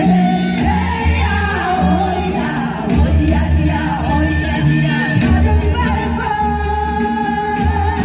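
Amplified song accompanying a stage dance: a singing voice with a wavering vibrato carries the melody over a heavy bass line, played loud through stage loudspeakers.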